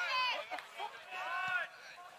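Men's voices shouting short, high, wordless calls across a football pitch, with a single dull thud about one and a half seconds in.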